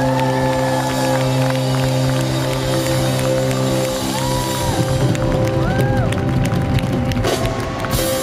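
Live band music holding a sustained chord, with drums and cymbals coming in busily about halfway through, over an arena crowd cheering and whooping.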